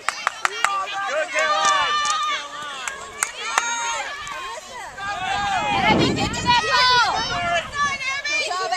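Sideline spectators shouting and calling to the players over one another, many high voices overlapping, with a few sharp knocks in the first second and a low rumble about five to seven seconds in. Near the end a voice calls "good, good, good."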